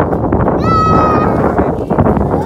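A child squeals once, a high held note lasting about half a second, while sliding down a metal playground slide over a loud, steady rushing noise.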